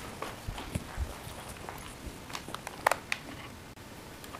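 Irregular small clicks and knocks of handling, with a few soft low thumps in the first second and a sharp click about three seconds in.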